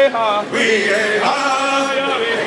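A group of voices singing a chant together, holding each note briefly before stepping to the next pitch.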